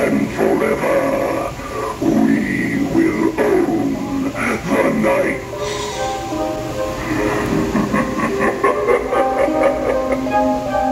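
Animated Grim Reaper Halloween prop's recorded voice intoning its lines through a small built-in speaker, giving way to music from about six seconds in.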